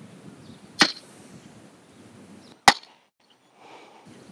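Pistol crossbow firing: the string's sharp snap as it looses a sand-weighted bolt trailing fishing line from a spinning reel. A second, louder and shorter snap follows about two seconds later.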